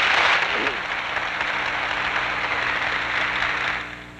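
Audience applauding, a dense steady clapping that dies away near the end.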